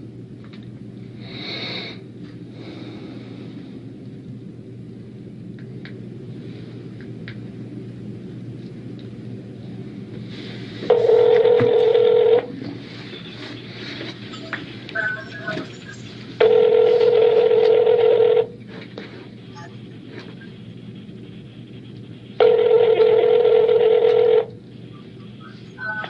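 Phone ringback tone heard through the handset's speaker: three rings, each about two seconds long and about six seconds apart. The call is ringing through at the other end and has not yet been answered.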